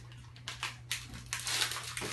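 Short crinkling rustles from gloved hands handling small packaged medical supplies over a tray, busiest in the second half, over a steady low electrical hum.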